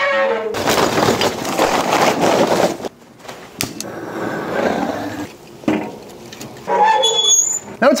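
Charcoal poured from a paper bag into an offset smoker's steel firebox, clattering for about two and a half seconds. Then a handheld propane torch hisses as it lights the charcoal.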